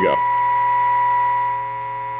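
Steady test tone of about 1 kHz from the RCA Model T62 radio's speaker, the signal generator's modulated 455 kc IF signal being received, over a low steady hum. The tone drops in level about three-quarters of the way through as an IF trimmer is turned during alignment.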